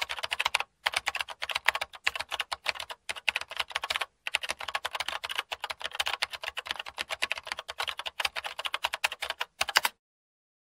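Rapid, continuous clicking like fast typing on a computer keyboard, broken by a few brief pauses.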